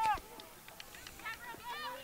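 A flock of geese honking, heard faintly: short rising-and-falling calls overlapping one another from about halfway through. A few faint sharp taps come before the calls.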